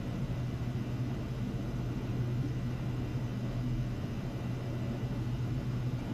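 Small ultrasonic cleaning bath running with liquid circulating through its tubes: a steady low hum over a faint hiss.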